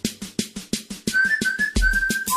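Background music: a quick, even percussion beat, joined about a second in by a high whistled melody stepping between notes.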